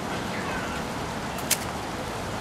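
Outdoor ambience with a steady rush of wind on the microphone and a few faint, short high chirps. A single sharp click about a second and a half in.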